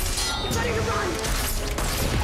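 Action-scene soundtrack from a TV show: dramatic music and sound effects, with a sharp metallic clink near the start as a bolt is fired and knocked aside by a sword.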